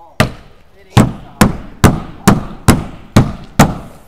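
A hand striking the wall of a foam-core insulated tiny-home panel, eight hard thuds about half a second apart, testing how stout the thicker panel is.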